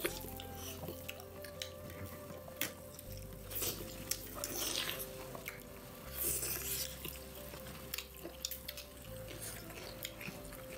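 Close-up eating sounds of food eaten by hand: chewing, mouth noises and sharp little clicks against steel plates, with a couple of longer wet bursts around the middle. Soft background music with a slow bass note changing every few seconds runs underneath.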